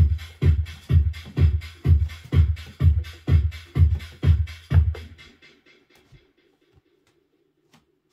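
Electronic dance track with a steady kick drum, about two beats a second, played through a Pioneer DDJ-FLX6-GT DJ controller while its Merge FX effect is worked. The beat fades out about five seconds in, leaving a faint held tone, then near silence with a few light clicks.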